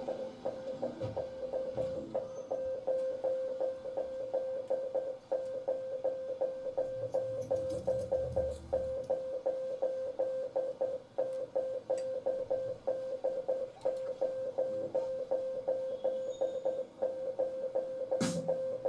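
Live ambient electronic music: one sustained mid-pitched note pulsing in a fast, even rhythm, with low bass notes swelling in about a second in and again around the middle.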